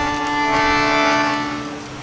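A held musical chord of several steady notes from the accompanying instrument, swelling over the first second and fading toward the end.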